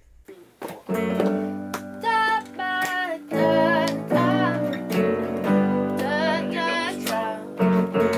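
A small band playing: strummed guitar and keyboard piano chords, with a voice singing a melody over them, starting about a second in.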